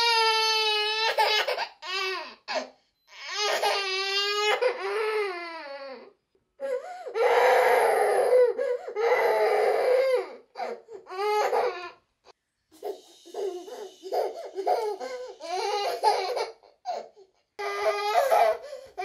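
A feverish one-year-old baby crying in long, high wails, then shorter broken sobs in the second half.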